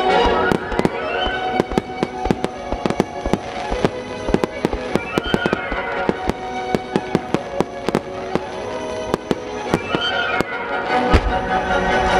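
Aerial firework shells bursting in a fast run of sharp reports and crackles, several a second, over music; a deeper boom near the end.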